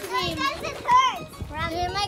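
Children's voices calling and shouting as they play in the water, with one loud high call about a second in that rises and falls.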